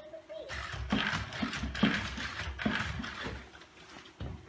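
NAO humanoid robot walking a few steps: its feet tap on the floor with each step over the whir of its joint motors. This starts about half a second in.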